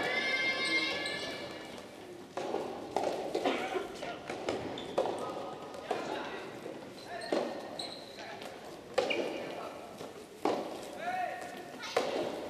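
Loud voices shouting and calling with a strong echo off the walls of a large indoor hall, near the start and again near the end, with scattered sharp knocks in between.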